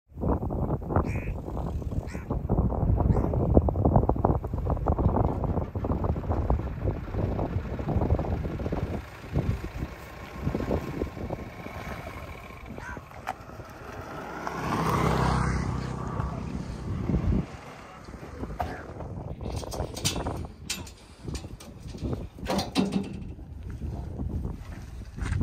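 A pickup truck running and rattling over a rough dirt road, loudest in the first nine seconds, with a swell of engine noise about fifteen seconds in and quieter scattered knocks and clatter towards the end.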